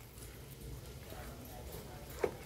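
A cleaver slicing through a block of boiled pork belly onto a wooden chopping block, faint.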